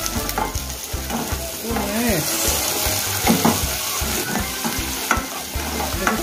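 Broad beans and chopped vegetables sizzling as they fry in a pot on high heat, stirred with a spatula that scrapes and knocks against the pot again and again.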